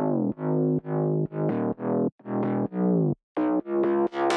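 FM bass patch in the Serum software synthesizer playing a bass line of short, distorted notes about two a second, each note starting bright and quickly darkening, with brief gaps between notes and a few notes jumping higher in pitch.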